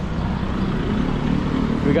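Low, steady rumble of road traffic, with a motor vehicle running close by.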